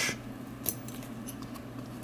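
A single light metallic click about two-thirds of a second in, followed by a fainter tick, as the catch button on a small seven-pin tumbler lock of a nylon deposit bag is pressed back down.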